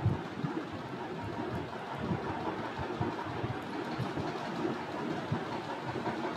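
Steady background hiss with faint, irregular soft taps of a stylus writing on a tablet screen.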